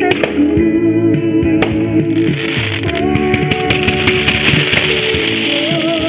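Music playing over fireworks: sharp cracks and pops throughout, with a dense crackling hiss from spark fountains from about two seconds in until near the end.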